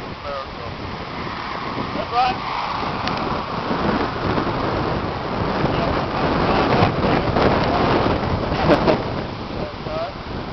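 Strong storm wind gusting across the microphone in a steady roar that swells and eases. Faint voices come through at times.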